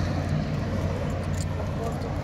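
Steady low mechanical hum with an even rushing noise over it.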